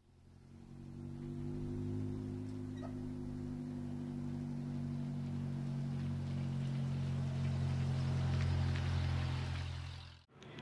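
A dwarf car's engine running at a steady pitch as the car drives up and past, building over the first couple of seconds, swelling a little past the middle and fading near the end.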